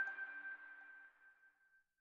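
A single high ringing note, the tail of a music jingle, dies away over about a second and a half into silence.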